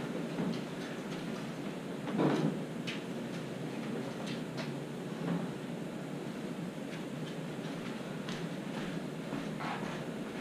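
Blanket being unfolded and spread over a wooden bed frame: soft fabric rustling and a few faint knocks, with a louder rustle about two seconds in, over a steady low background hum.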